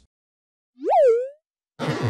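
A cartoon-style pop sound effect: one short tone that swoops up and drops back down, followed near the end by a brief rushing whoosh.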